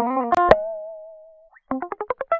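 Prominy SC sampled electric guitar playing a solo line clean, without distortion. It plays a few quick notes, then one held note with vibrato that fades away over about a second, then a fast run of rising notes.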